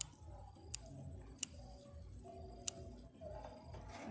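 Small scissors snipping through water spinach stems: four sharp, irregularly spaced snips.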